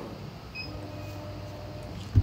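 Laguna Laser EX CO2 laser's gantry stepper motors whining as the laser head homes after power-up: a steady tone pauses briefly at first, then runs again from about half a second in until near the end, over a low steady hum.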